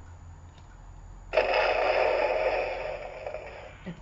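Hulk Titan Hero Power FX toy plays a roar sound effect through its small speaker. The roar starts just over a second in, lasts about two and a half seconds and fades toward the end.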